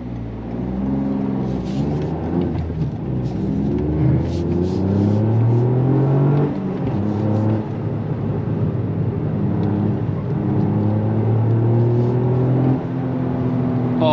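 Toyota GR Yaris 1.6-litre turbocharged three-cylinder with a Milltek exhaust, heard from inside the cabin under full-throttle acceleration from a standstill. The engine note climbs steadily through each gear and drops back at every upshift, with clear shifts about six and a half seconds in and again near the end.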